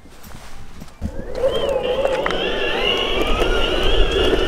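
Electric skateboard starting off: a high whine from its motor that wavers and then slowly rises as it picks up speed, over the rumble of the wheels on pavement, beginning about a second in.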